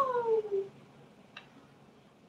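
Woman's long, drawn-out "ah!" cry, sliding steadily down in pitch and trailing off under a second in, followed by a faint click.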